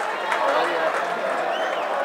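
Indistinct chatter of several people talking at once, a steady babble of voices with no words standing out.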